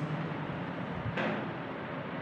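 Faint, even room hiss. A little past a second in, a brighter scratchy hiss of a marker drawing on a whiteboard comes in, with a soft knock just before it.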